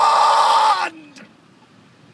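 A man's loud, long drawn-out yell of "God!", held on one steady pitch and cutting off just under a second in, then tailing off with a short falling sound.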